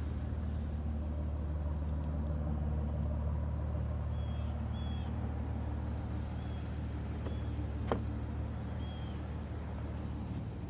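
Aston Martin V12 Vantage S's naturally aspirated V12 idling steadily, with a single sharp click about eight seconds in.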